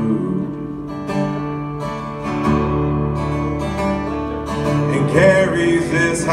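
Acoustic guitar strummed in a short instrumental stretch between sung lines, its chords ringing, with a change of chord about halfway through.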